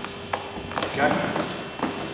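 A few short slaps and thuds of bare feet stepping and sliding on foam training mats during kick-evasion footwork.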